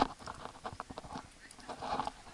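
A sharp knock right at the start, then scattered faint clicks and taps: climbing gear being handled close to the camera, with metal carabiners and rope on the tree platform.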